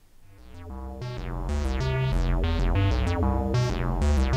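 Arturia MicroFreak synthesizer playing a clock-synced sequence: a repeating pattern of plucked synth notes over a bass line. It fades in over about the first second and then runs steadily.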